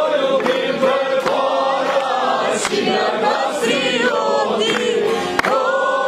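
Albanian folk ensemble singing a folk song in chorus, with long held notes and a melody line over them.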